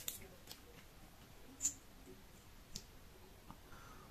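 Faint, scattered small plastic clicks of a lip gloss tube being handled and its cap opened, about five ticks with the loudest about one and a half seconds in.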